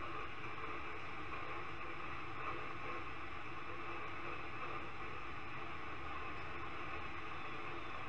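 A steady, even hiss with no words and no distinct events, unchanging throughout.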